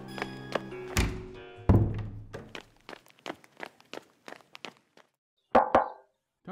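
Background music stops as two heavy thuds sound about a second apart. Then a run of footsteps, about three a second, fades away, and two loud knocks come near the end.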